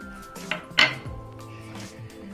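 Plastic lid being set onto a stainless steel mixer-grinder jar: two short clatters, about half a second in and just under a second in, the second louder. Background music plays throughout.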